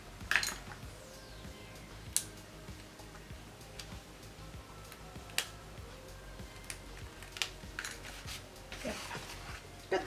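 A handful of sharp taps and clicks, a second or more apart, as a painted watercolour-paper sheet and small tools are handled and set down on a craft tabletop, with a brief rustle of the paper near the end.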